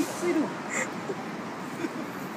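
A short burst of a voice in the first half second, then a brief hiss and a low, even background of outdoor street noise.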